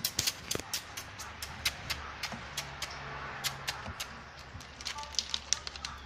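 Meat cleaver knocking on a wooden chopping block while cutting, a string of sharp, irregular knocks, several a second.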